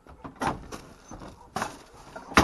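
The plastic lid of a large wheeled waste container being lifted open, with two short knocks and scrapes of the plastic.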